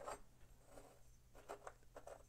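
Near silence: a few faint clicks and light rubbing as a small die-cast metal toy car body is handled on a wooden workbench, over a low steady hum.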